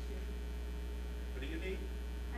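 Steady electrical mains hum on the recording, low and unchanging, with a brief faint sound about one and a half seconds in.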